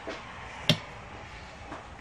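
A single sharp tap on the control box panel by a hand, about two-thirds of a second in, over a faint steady background.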